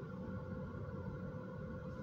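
Steady low hum inside a car cabin, with a faint constant tone above it; no distinct events.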